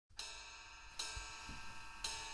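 A cymbal on a jazz drum kit struck softly twice, about a second apart, each stroke left ringing; a couple of faint low thuds come between them.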